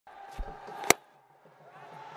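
A single sharp crack about a second in, the cricket bat striking the ball for a sliced shot, over crowd noise that dips and then swells again near the end.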